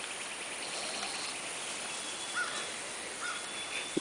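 Outdoor summer background of insects: a rapid high trill in the first second, then a fainter steady buzz, with two brief faint chirps in the second half.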